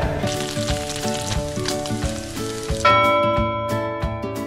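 Diced pork sizzling as it browns in a pan in its own rendered fat and a little added oil, under background music. About three seconds in the sizzle drops away and only the music carries on.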